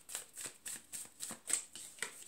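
A deck of tarot cards being shuffled by hand: a quick run of short, soft card strokes, about four a second.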